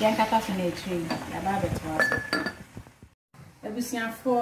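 A woman talking while cookware clinks under her voice, with a short ringing clink about two seconds in. The sound drops out briefly near the end.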